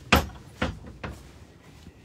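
Yard gate being handled, giving three knocks: a sharp, loud one right at the start, a second about half a second later and a fainter one about a second in.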